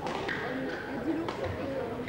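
Badminton rackets striking a shuttlecock in a rally: a sharp hit at the start and another about 1.3 s in, with players' footwork on the court, over indistinct voices in a large hall.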